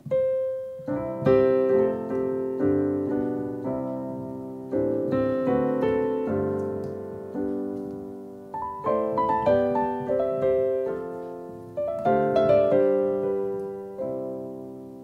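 Roland RD-2000 digital stage piano playing a slow chord passage on a grand piano tone. A single note opens it, then chords are struck about every half second to a second, each ringing and fading. It is the sound the player finds boxy and uninspiring.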